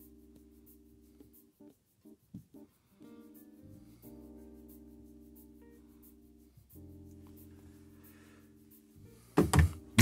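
Faint background music: soft, sustained keyboard-like chords, three held chords one after another. A man's voice cuts in loudly just before the end.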